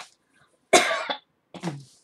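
A woman coughing: one loud cough a little under a second in, followed by a shorter, lower one.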